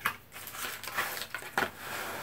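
Paper rustling and crinkling as a large folded instruction leaflet is handled, in a few short crackles.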